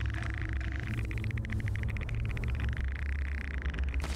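Sound design from a TV episode's soundtrack: a steady low rumbling drone with a dense, rapid crackling buzz over it.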